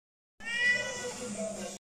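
A Siamese cat meowing: one long meow of about a second and a half, starting about half a second in.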